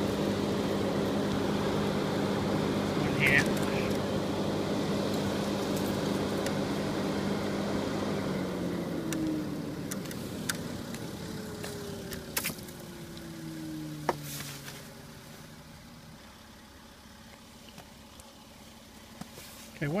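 A motor vehicle's engine hum, steady at first, then fading away over several seconds with a falling pitch. Several sharp clicks come from the plow's wiring plug connectors being handled.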